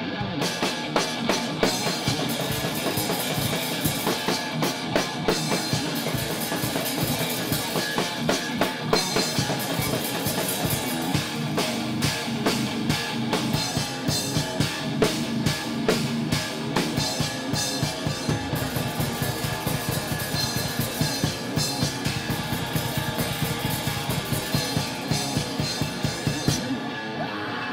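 Electric guitar and drum kit playing rock live: dense drumming with bass drum, snare and cymbals over the guitar. The drums come in at the very start.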